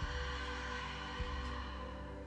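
A long open-mouthed exhale, a breathy rush of air that fades out over about two seconds, over soft ambient music with a steady low beat a little over once a second.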